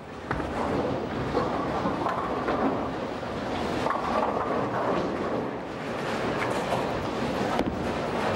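Steady rumble of a busy bowling alley: balls rolling down the wooden lanes and pinsetter machinery running, with a few sharp knocks of balls or pins.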